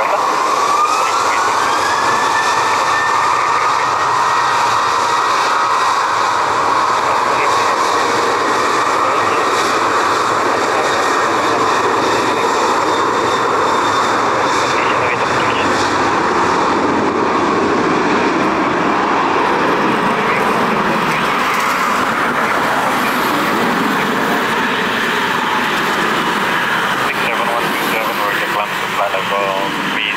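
Boeing 737 jet engines spooling up for takeoff: a whine that climbs in pitch over the first few seconds and then holds, over a loud, steady jet roar as the airliner rolls down a wet runway.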